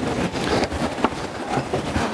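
Steady rustling and shuffling handling noise with scattered small clicks and one sharper knock about a second in, as papers and objects are handled at a table.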